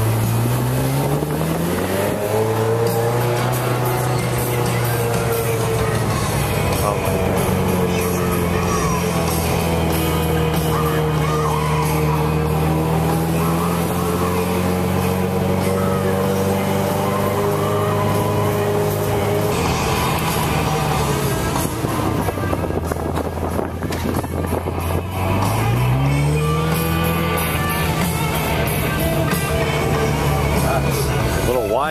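A car's engine pulling away, its pitch rising over the first two seconds and then holding steady while cruising at low speed. It drops back about two-thirds of the way through and rises again as the car accelerates a few seconds before the end.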